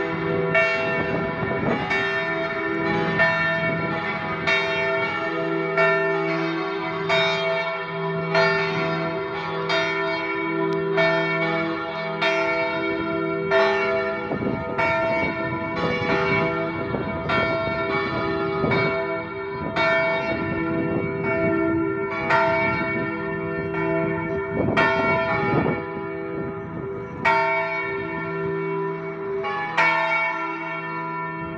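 Several church bells in an open belfry ringing continuously, struck in a quick repeating pattern of a little over one stroke a second. Their tones of several pitches ring on into one another, and a lower bell sounds beneath them in some stretches.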